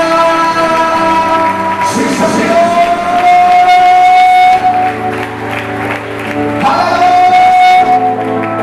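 A man singing a slow worship song into a microphone in long held notes, over sustained chords from an accompanying instrument. The chords change about halfway through.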